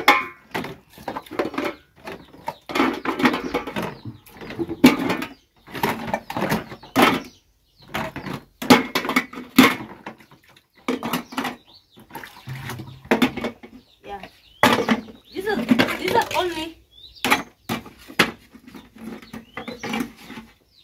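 Metal dishes and cups clinking and clattering as they are stacked into a metal cooking pot (sufuria), with a woman talking over it.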